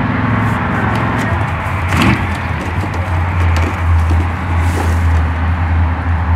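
Plastic packaging crinkling and tearing in short crackles as a boxed product is unwrapped by hand, over a steady low hum.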